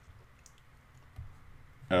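A few faint clicks over quiet room tone, the loudest about a second in, from hand-writing on a digital slide.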